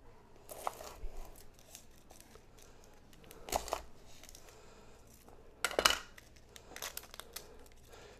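A chef's knife cutting through an onion on a wooden cutting board, with the crackle and tearing of its dry papery skin being split and peeled off: a few short crunches a second or two apart.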